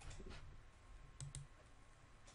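Faint computer mouse clicks, two in quick succession a little over a second in, as the cursor clicks through to the ad's page.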